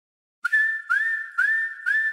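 A whistled tune starts about half a second in: a single clear whistled line repeating a short phrase, each note sliding up into pitch, about two notes a second.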